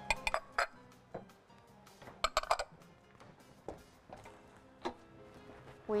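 Wooden spoon knocking and clinking against a metal saucepan as tomato juice is stirred in it: a few sharp knocks at the start, a quick cluster about two seconds in, then single ones, over soft background music.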